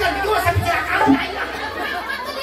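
A man talking through a stage microphone and PA, with two low thumps about half a second and a second in.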